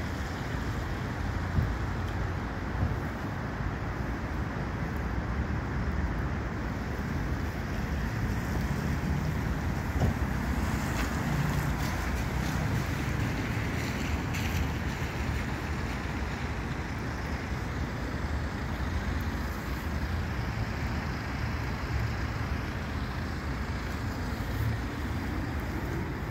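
Steady outdoor rushing noise with wind buffeting the microphone, rumbling unevenly, and a few faint knocks.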